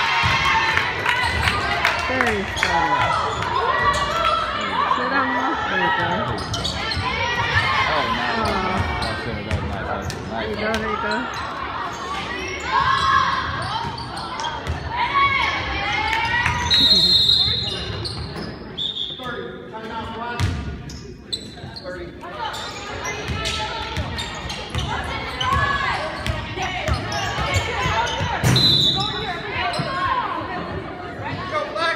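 Basketball game in a gymnasium: a ball bouncing on the court amid players' and spectators' voices calling out and talking, with the hall's echo. A few brief high-pitched tones cut through, the clearest about 17 seconds in and again near the end.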